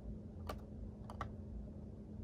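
A few faint, sharp plastic clicks, about three, from the blister pack and card of a packaged Hot Wheels car being handled, over a faint steady hum.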